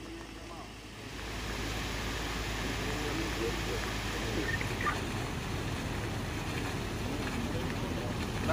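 Faint, indistinct voices of a small group talking outdoors over steady background noise with a low rumble, which grows louder about a second in.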